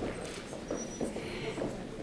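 A few faint, scattered footsteps on a hard stage floor.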